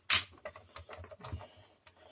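A screwdriver ticking and scraping against the plastic housing of a hand mixer while screws are being undone. There is one short, louder scratchy noise right at the start, then small scattered clicks.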